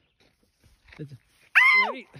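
Near silence, then about one and a half seconds in a short, loud cry that falls steeply in pitch.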